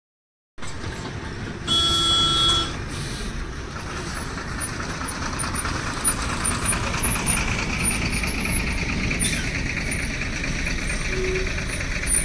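Loaded diesel trucks' engines running steadily under load as they climb. A truck horn sounds once for just under a second, about two seconds in. A short hiss of air, like an air-brake release, comes about nine seconds in.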